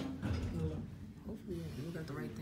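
Indistinct voices of people talking in the background.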